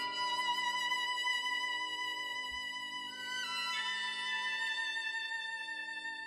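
Violin playing a slow melody in long held notes, stepping to a new note about three and a half seconds in, over a quiet, quick, even pulsing low accompaniment.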